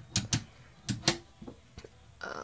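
Sharp clicks and knocks of small hard objects being handled, in two quick pairs, one just after the start and one about a second in.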